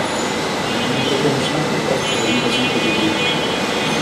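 Steady rushing background noise with faint, low talking under it.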